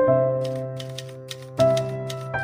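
Typewriter key-click sound effect, a quick irregular run of clicks that matches the caption being typed out, over gentle background music with sustained chords. A new chord comes in about a second and a half in.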